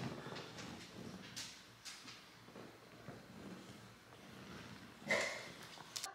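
Faint sucking and breathing of a man drinking milk from a baby-bottle teat, with soft rustling of clothing; a louder short sound about five seconds in.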